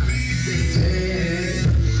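Live rock band playing a song, full band music at steady loudness.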